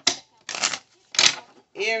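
A tarot deck being shuffled by hand, in three short rustling bursts of cards, the first right at the start. A woman's voice says "Aries" near the end.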